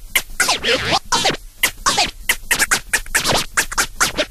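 Record scratching in rave music: quick back-and-forth strokes, several a second, each sweeping up and down in pitch.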